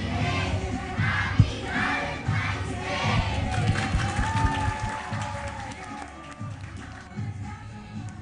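A classroom crowd of children and adults cheering and shouting together, fading out in the second half.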